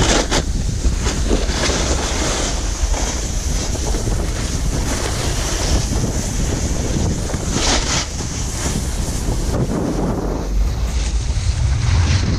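Wind buffeting the microphone of a camera moving fast downhill, over the hiss and scrape of snowboard edges carving across packed snow. Brief louder scrapes come near the start and about eight seconds in.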